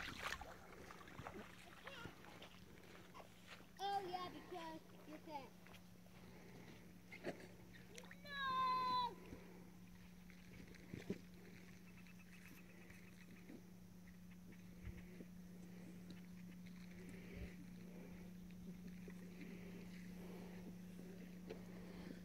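Faint high-pitched voice of a child calling out twice, at about four and eight seconds in, over a steady low hum.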